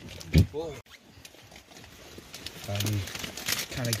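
Low, indistinct talking, with an abrupt break about a second in.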